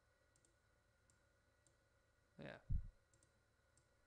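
A few faint, scattered computer mouse clicks over a steady faint electrical hum. About two and a half seconds in there is a short noisy burst and then a brief low thump, the loudest sound.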